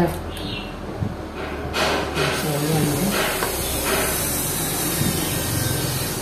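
Hands pulling apart a Honda Dream motorcycle carburetor, with a few light clicks of metal and plastic parts. A steady hiss comes in about halfway through.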